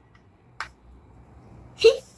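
Slime pressed by hand, giving a faint click about half a second in and a louder, sharper pop near the end.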